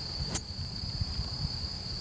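Insects chirring steadily in one high, even tone, with a single sharp click about a third of a second in as a golf club swings through.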